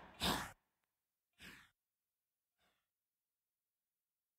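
A short breathy vocal sigh on the song's recording, about a quarter-second in, echoed twice more, each repeat fainter and about a second apart.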